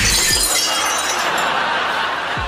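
An empty glass bottle smashing: a sudden crash, then shattering glass that slowly trails off.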